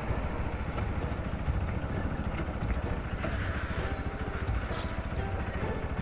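Bajaj Pulsar NS200 motorcycle riding at a steady road speed, its single-cylinder engine running evenly under a continuous rumble.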